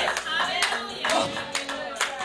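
Congregation clapping hands in a steady beat, about two claps a second, with a voice calling out over the claps.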